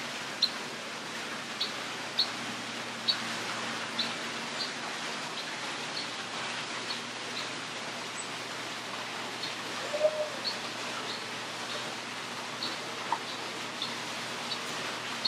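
A bird gives short, high chirps, irregularly about once a second, over a steady background hiss; a slightly louder cluster of calls comes about ten seconds in.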